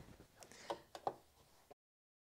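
Faint handling noise with two small clicks, as fabric is moved up to an overlocker that is not running. The sound cuts off to dead silence shortly before the end.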